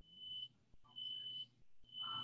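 Faint electronic beeping: a steady high tone repeating about once a second, each beep about half a second long.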